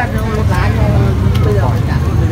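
Indistinct voices of people talking, with no clear words, over a steady low rumble.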